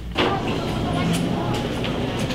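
Steady background noise of a grocery store checkout area, with faint indistinct voices, cutting in suddenly just after the start.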